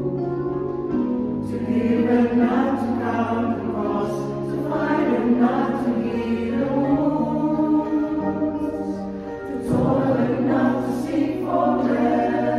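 Mixed choir of men's and women's voices singing a hymn in parts, in sustained chords, with a short break between phrases near the end.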